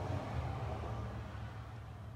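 2015 Buick LaCrosse's 3.6-litre V6 engine idling steadily, a low, even hum.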